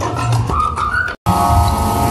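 Loud amplified live music from an outdoor concert stage, with a melody line that bends up and down. It breaks off for an instant about a second in, then carries on with steady held notes.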